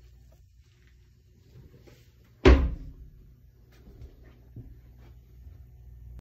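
A single loud thump about two and a half seconds in, dying away over half a second, like a hatch or door shutting. Underneath, a faint steady low hum.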